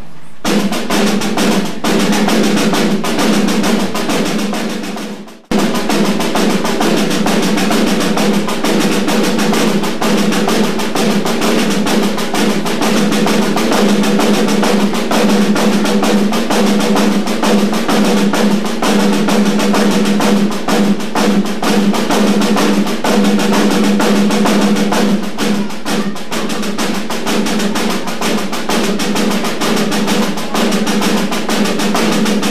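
Two snare drums played together as a duet, a fast, dense stream of stick strokes and rolls. The sound dips and cuts out for a moment about five seconds in, then carries on.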